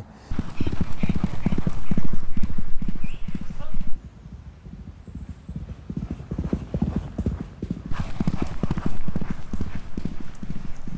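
Hoofbeats of a galloping racehorse, a rapid drumming of hooves. They are loud for the first four seconds, drop away sharply, then grow louder again near the end.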